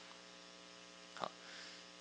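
Faint steady electrical mains hum in the microphone and sound system, with a brief soft sound a little over a second in.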